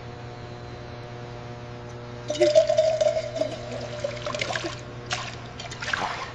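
Liquid poured into a stainless steel vat, splashing, starting about two seconds in, over a steady machine hum.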